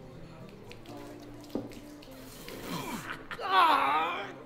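Liquid streaming and spattering as a man urinates across a bar. A man's voice cries out loudly near the end.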